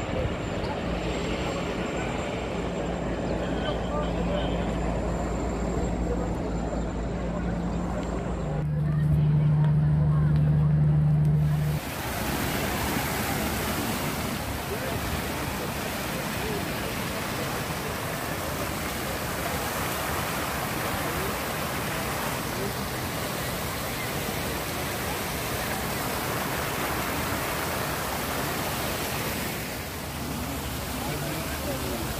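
A low steady drone, louder for a few seconds near the ten-second mark, gives way at about twelve seconds to a steady rushing wash of splashing fountain water.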